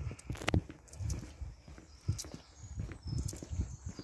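Footsteps of a person walking on a tarmac lane, about two steps a second.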